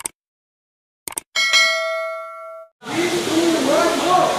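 Mouse-click sound effects followed by a bright notification-bell ding that rings and fades over about a second, the usual subscribe-button animation sound. About three seconds in, a steady background of voices and room noise starts.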